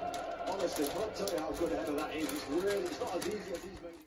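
Faint sing-song voice with light rustling and flicking from a small hand-held flag on a stick being waved.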